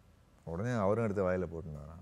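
A low-pitched voice making a drawn-out, wavering vocal sound for about a second and a half, starting about half a second in.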